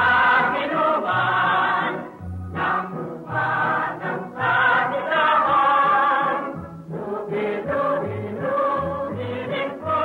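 A chorus of voices singing a song with instrumental accompaniment on an old film soundtrack, in sung phrases with brief breaks about two seconds and seven seconds in.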